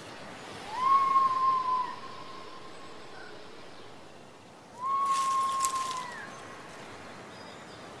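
Woodland nature-sound bed: a steady background hiss with two long whistled bird calls, each rising quickly and then held on one pitch for about a second, the first about a second in and the second around the middle.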